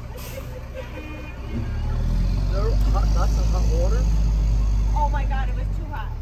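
A golf cart drives past close by, its motor giving a low, steady drone that swells about two seconds in and falls away near the end. Faint voices and laughter sound over it.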